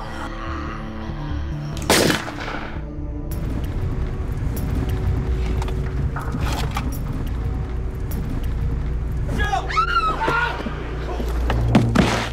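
A single pistol shot about two seconds in, loud and sharp, over a dramatic film score with a low, steady drone.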